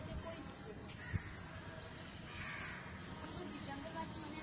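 A bird's harsh call about two and a half seconds in, over steady outdoor background noise, with a single sharp knock about a second in.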